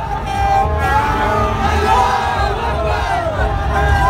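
A dense crowd shouting and chanting together, with plastic party horns tooting among the voices, over a steady low rumble.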